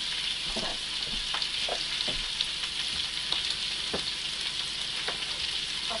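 Oil sizzling and crackling in a frying pan on a gas stove, a steady hiss with scattered small pops, and a few soft knocks of kitchen handling.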